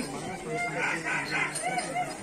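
Domestic fowl calling, a run of three loud high notes about a second in, over the chatter of a crowd.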